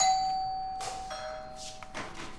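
A doorbell chime ringing two notes, ding-dong: a higher note struck at once and a lower one about a second later, both ringing on and slowly fading.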